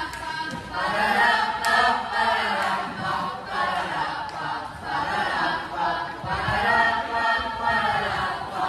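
A group of voices singing together in chorus without instruments, the sung phrases swelling and easing every second or so.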